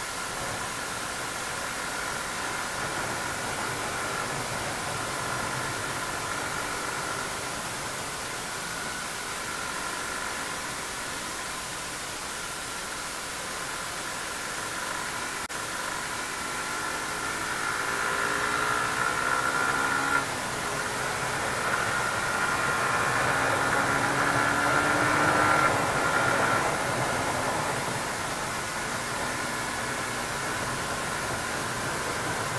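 Wind rushing over an action camera's microphone on a moving Suzuki GSX 150 motorcycle, with the bike's single-cylinder engine running underneath. Past the middle the engine pitch climbs as the revs rise, and the sound grows louder for several seconds before settling.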